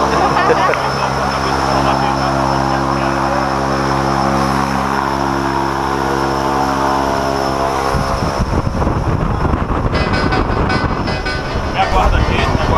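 Single-engine propeller jump plane's engine running steadily. About eight seconds in, the sound cuts abruptly to a loud, steady rush of wind and engine noise through the plane's open door in flight.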